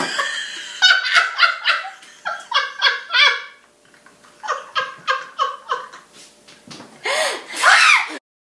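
Two women laughing hard together in rapid rhythmic ha-ha pulses. The laughter dies down briefly about halfway, then builds to a loud peak near the end.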